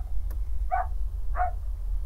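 A small dog yipping twice, short high yips about two-thirds of a second apart, over a steady low hum.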